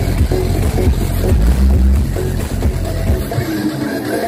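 Huge outdoor sound-system rigs stacked with subwoofers blasting electronic dance music together, with very heavy, pounding bass. The bass drops away briefly near the end.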